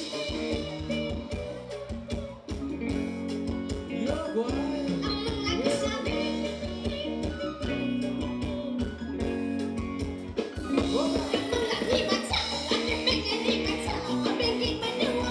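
Live band playing Thai ramwong dance music with a steady beat and a singing voice; the music gets fuller and louder about ten and a half seconds in.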